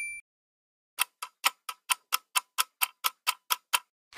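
Clock-ticking sound effect for a three-second countdown timer: about a dozen sharp, evenly spaced ticks, roughly four a second, starting about a second in. At the very start a bell-like ding fades out.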